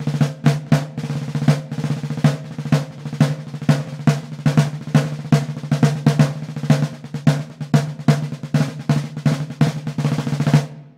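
A deep 16x16 inch Slingerland marching field drum with its snares on, played with hickory sticks in a steady run of strokes and rolls, the snares buzzing under each hit. A snare-wallet muffler on the batter head dries out the drum's ring.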